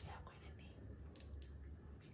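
A woman's faint whispering over a low, steady hum of room tone, with a couple of soft clicks about a second in.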